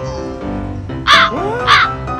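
Two loud, identical cawing calls about half a second apart, a comedy sound effect of a crow cawing, laid over steady background music.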